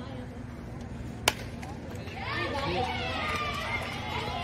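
A softball bat striking a pitched ball: one sharp crack about a second in. Spectators then cheer and yell in high voices as the hit goes into play.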